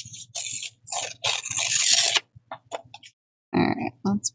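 Paper being handled, rustling and crinkling in short irregular bursts, with a longer burst about a second and a half in, over a faint low steady hum.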